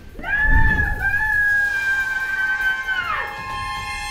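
A woman's long high-pitched scream, held on one pitch for about three seconds and then falling away, over dramatic film score music, with a low boom just after it begins.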